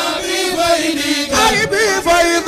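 Male voices singing an Arabic religious poem, a Senegalese Tijani chant, with a wavering, ornamented melody over held notes.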